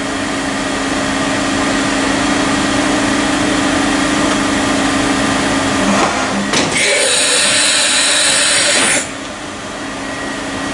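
Heckler & Koch BA 40 vertical machining center running with a steady hum. About six and a half seconds in there is a click, then a loud hiss for about two seconds that cuts off suddenly.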